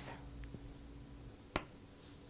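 One sharp click a little past the middle, as a plastic spudger pries the battery cable connector up out of its socket on a MacBook logic board.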